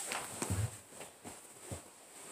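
Soft low thumps and rustling of people moving about and settling onto a sofa, one thump about half a second in and another near the end.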